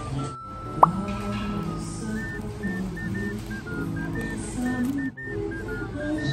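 Background music with a light melody, briefly cutting out twice. There is one short, sharp sound about a second in, the loudest moment.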